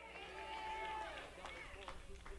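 Faint, overlapping voices of a congregation calling out in response, with a few scattered claps.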